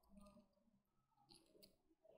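Near silence: quiet room tone with a few faint clicks about one and a half seconds in.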